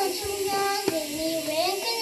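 A young girl reciting in a sing-song, chanted voice into a microphone, her pitch gliding up and down on drawn-out syllables.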